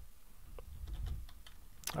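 Typing on a computer keyboard: a few soft, scattered keystrokes.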